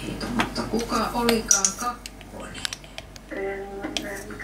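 Small wire coil whisk stirring yeast into warm water in a plastic mixing bowl, making quick, irregular clicks and taps as it hits the bowl's sides.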